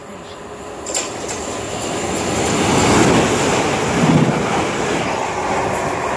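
LNER A4 Pacific steam locomotive 60009 Union of South Africa with its train, running through the station at speed without stopping; the rumble of the engine and wheels on the rails builds to its loudest about three to four seconds in, then eases slightly.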